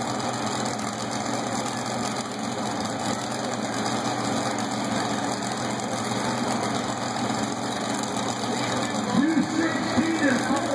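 Small garden tractor engine running steadily under load as it pulls a weight sled down a dirt track, heard over a crowd's chatter. Near the end a wavering voice-like sound rises over it.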